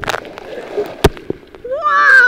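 A person cannonballing into a swimming pool: a sharp smack of the body hitting the water at the very start, then the splash of spray falling back for about half a second. A second sharp knock about a second in.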